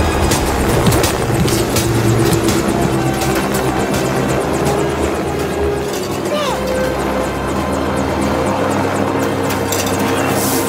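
Action-film soundtrack: music over the fast, steady chop of a helicopter's rotor, the chop heaviest in the first half.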